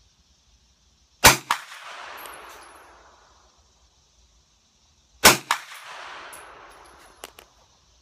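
Two shots from a Hi-Point 9mm carbine about four seconds apart. Each is a sharp crack, followed a moment later by a second, quieter crack and a rolling echo that fades over about two seconds. A few light ticks come near the end.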